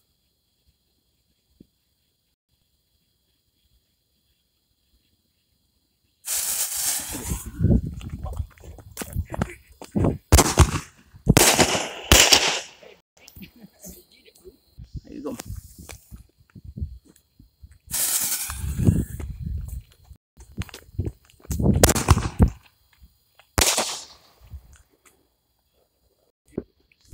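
Consumer firework tube going off: after about six seconds of near silence, a run of loud shots and bangs, irregularly spaced, some with a long hiss and a deep boom.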